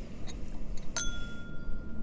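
A single glass clink about a second in, the small sample bottle knocking against the copita tasting glass, which rings on at one clear pitch for about a second. Low wind rumble on the microphone runs underneath.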